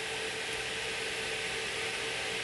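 Cooling fans of graphics cards on a running cryptocurrency mining rig, a steady whoosh with a faint steady hum.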